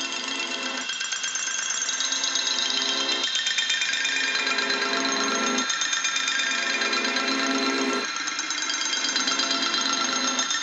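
Background music: held, sustained chords whose pitches change in regular steps about every two and a half seconds.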